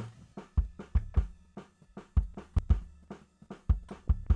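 Multitrack band mix playing back from a Cubase session, led by a drum kit: kick-drum thumps, snare hits and cymbals in an uneven beat.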